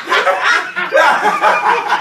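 People laughing.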